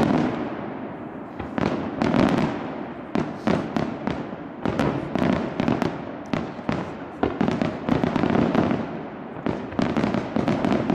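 Aerial firework shells bursting in a steady barrage: many sharp bangs in quick succession, each trailing off into an echoing rumble.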